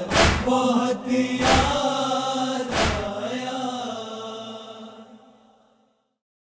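A nauha chorus chanting a held, sustained line, punctuated by three heavy matam (chest-beating) thumps about 1.3 seconds apart in the first three seconds. The chanting then fades out.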